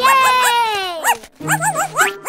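A cartoon puppy yipping: a quick run of short, high yips, over a long falling tone in the first second, with bouncy background music.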